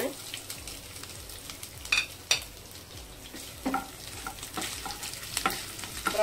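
Freshly added chopped pieces sizzling and frying in hot oil in a nonstick pan while being stirred, with a few sharp clicks of utensils against the pan.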